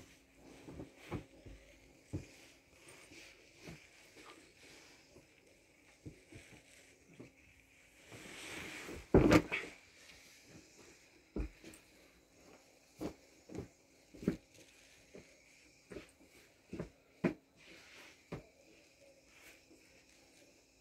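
Heavy wool pile rugs being handled and flipped over on a stack of other rugs: scattered soft thumps and knocks, with a swishing rush of cloth about eight seconds in that ends in the loudest thump. A faint steady hum runs underneath.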